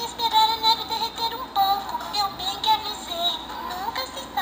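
A children's sound book's built-in speaker playing a song with music and a high-pitched singing voice.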